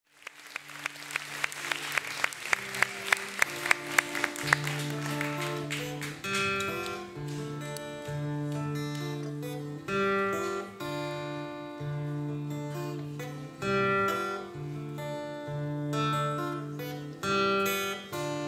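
Live ensemble music. It opens with a steady run of sharp percussive clicks, a little over two a second, growing louder. From about six seconds in, instruments take over with a slow pattern of low held notes and higher plucked string notes.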